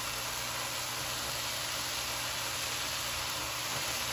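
Ground meat and onions frying in a pan: a steady, even sizzle with no distinct knocks.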